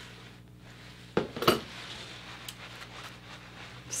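Steel hair-cutting scissors: two sharp metallic clicks a little over a second in, followed by a few faint ticks.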